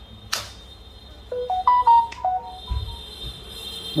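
A sharp click, then a short electronic tune of clean beeping notes stepping up and down in pitch, lasting about a second and a half.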